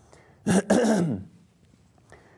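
A man clearing his throat once, about half a second in; the sound is short and rough and falls in pitch at the end.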